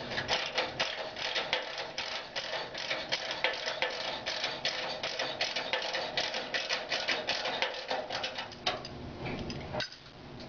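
Rapid run of metallic clicks from a hand tool tightening the clamp ring on a stainless-steel vibratory screener frame, stopping just before the end.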